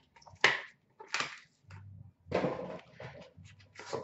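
Hands handling a metal card tin and its packaging: a few short scrapes and knocks, with a longer rustle about two and a half seconds in.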